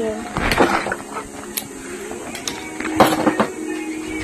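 People's voices, with scattered sharp clicks and knocks, the loudest about three seconds in.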